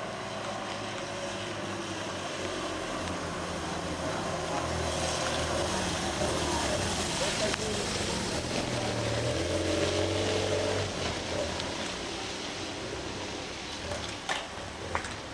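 Race escort motorcycles riding past up a wet street, their engine hum building to a peak about two-thirds of the way through and then fading, with the hiss of tyres on the wet road.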